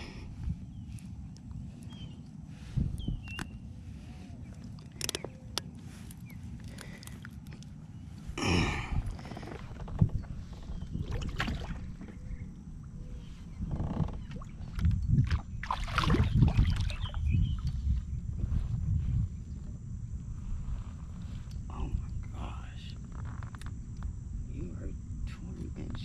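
Steady low rumble of wind on an action camera's microphone, with scattered clicks and knocks of tackle being handled in a kayak. Water splashing comes in louder stretches about a third of the way in and again past the middle, as a largemouth bass is fought to the side of the kayak and lifted in.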